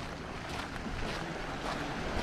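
Footsteps crunching on beach shingle, about two steps a second, over wind buffeting the microphone and small waves lapping at the shore.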